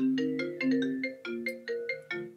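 A phone ringing: its ringtone plays a quick melody of short struck notes, about six or seven a second.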